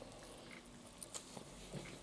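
Faint, close-up chewing of a bite of ham and egg sandwich: soft wet mouth sounds with a few small clicks from about a second in.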